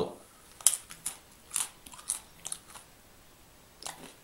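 A person biting and chewing a dry flax-and-buckwheat crispbread close to the microphone. Irregular crisp crunches come about twice a second, then die away, with one last crunch near the end.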